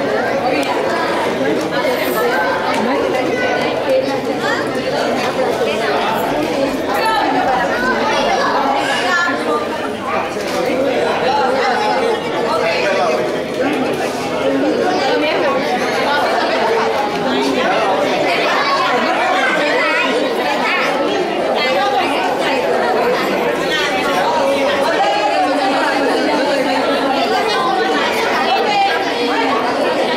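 A crowd of people talking over one another: steady, overlapping chatter with no single voice standing out.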